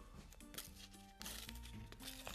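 Quiet background music with held notes, and a Panini paper sticker packet being torn open, a short papery rustle about a second in.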